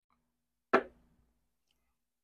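A small drinking glass set down on a wooden bar top: one short knock about three quarters of a second in, dying away quickly.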